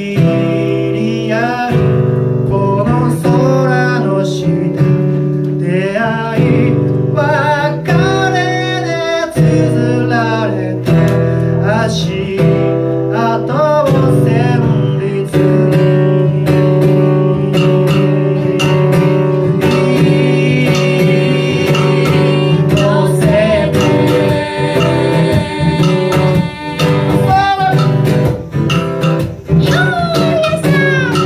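Steel-string acoustic guitar strummed under a sung melody, with sharp percussive clicks scattered through the music.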